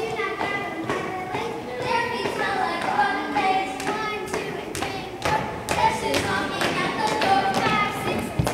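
Children's voices singing together, with scattered thumps and taps on the floor.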